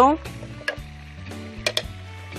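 A few light clicks and knocks as a chunk of feta cheese goes into a hand blender's plastic chopper bowl: one about a second in and two quick ones near the end, over soft background music.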